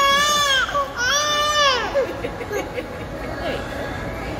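Baby girl crying just after having her ears pierced: two long, rising-and-falling wails, the second ending about two seconds in, after which the crying stops.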